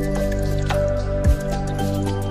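Background music: sustained tones over a low beat, with one deep thump about a second and a half in.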